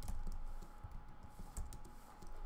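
Typing on a computer keyboard: a handful of separate, irregular keystrokes.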